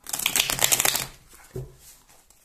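A deck of cards being riffle-shuffled on a table: a rapid flutter of cards snapping past each other for about a second, then dying away, with one soft knock about halfway through as the halves are worked together.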